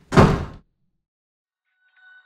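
A panelled interior door slammed shut: one loud bang right at the start, lasting about half a second.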